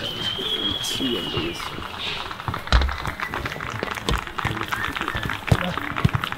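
Indistinct men's voices as footballers walk out onto the pitch, with a long high whistling tone in the first second and a half. A few sharp thumps follow, the loudest a little under three seconds in.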